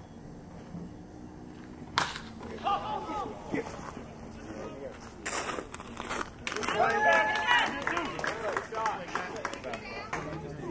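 A single sharp crack of a wooden bat hitting a baseball about two seconds in, followed by players and spectators calling out and shouting as the batter runs.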